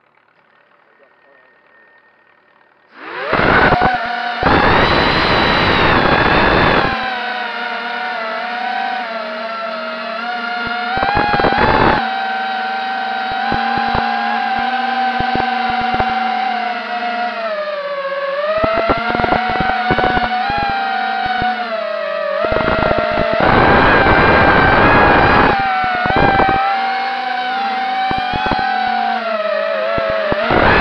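Quadcopter drone's electric motors and propellers, heard from its onboard camera: they spin up suddenly about three seconds in, then whine steadily as it climbs and flies, the pitch shifting with throttle. Loud rushing noise comes in bursts several times.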